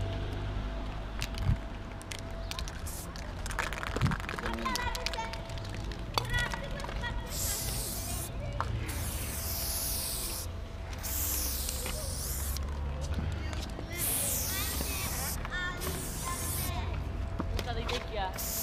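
Aerosol spray paint can hissing in a series of bursts, each about a second long with short breaks, starting about seven seconds in, as paint is sprayed onto a concrete ledge.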